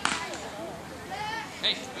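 Mostly voices: scattered talk and calls from players and spectators, with a man calling "Hey" near the end. A single sharp knock sounds right at the start.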